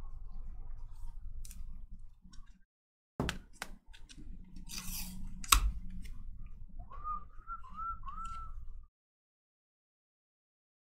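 Trading cards being flicked and slid one past another in the hands, giving a run of sharp clicks and light rustles, the loudest click about five and a half seconds in. Near the end there is a short wavering tone a few times over, and the sound cuts off about a second before the end.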